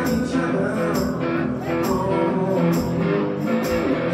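Live blues-rock played by a one-man band: amplified guitar over a steady beat of foot-played percussion with a cymbal, about two hits a second.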